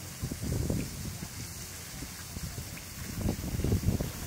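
Water splashing and sloshing as a child swims in a pool, mixed with low, irregular rumbling from wind on the microphone that grows louder near the end.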